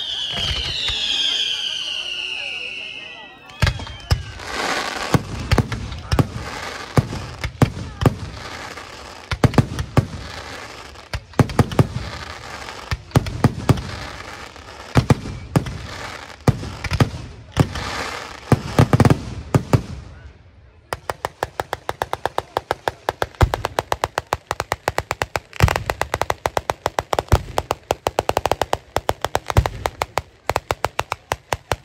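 Pyrotechnic display: whistling fireworks with falling-pitch whistles for the first few seconds, then a dense run of loud bangs and deep booms. From about two-thirds of the way in, this gives way to a fast, even rattle of sharp reports from a ground-level salvo.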